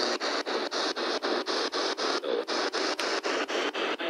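P-SB7 spirit box sweeping through the radio band: a steady hiss of static broken by short dropouts about five times a second as it jumps from station to station.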